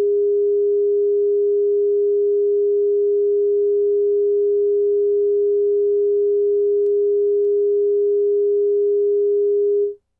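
Broadcast line-up reference tone recorded with colour bars at the head of a tape segment: one steady, loud pure tone at a single mid pitch that cuts off suddenly just before the end.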